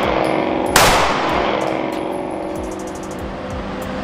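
A single 9mm shot from a Ruger Security 9 Compact pistol, about a second in, with a long echoing decay that dies away over the next couple of seconds in the enclosed indoor range.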